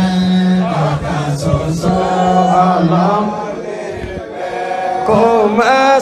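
A man's voice singing Yoruba waka, an Islamic devotional chant, in long drawn-out held notes with wavering ornaments; it dips in loudness about four seconds in and swells again near the end.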